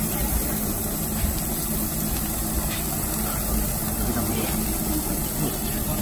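Steady low rumble from a gas-fired yakiniku table grill and its exhaust ventilation, with meat cooking on the grate.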